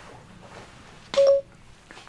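A single short electronic beep about a second in: a smartphone voice assistant's start-listening chime.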